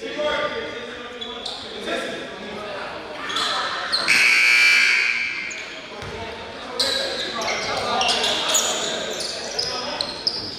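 Gym scoreboard horn sounds for about two seconds, about four seconds in, over voices and basketballs bouncing in a large gym. The horn marks the end of a timeout.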